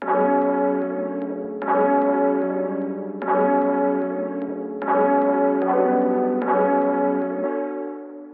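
A melodic pattern played back on a resampled piano sample. The sample has been EQ'd to cut its main frequency range and boost its secondary frequencies, then printed as a new instrument. A new group of notes is struck about every second and a half, each ringing on under the next.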